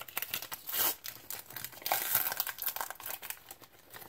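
The wrapper of a 2017-18 Prizm basketball trading-card pack being crinkled and torn open by hand, in irregular bursts.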